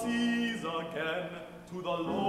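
Baritone voice singing an art song with grand piano accompaniment. One sung phrase fades about three quarters of the way through, with a short breath pause, and the next phrase starts just before the end.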